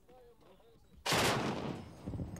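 Heavy gunfire: a sudden loud burst breaks out about a second in and dies away over most of a second. A faint wavering tone comes before it.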